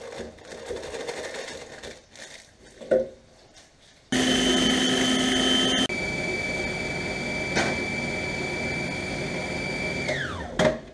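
Electric food processor starting suddenly about four seconds in and running steadily with a high motor whine, cutting out for an instant near six seconds and then running on, crushing digestive biscuits into crumbs. Before it, quiet handling and a single knock.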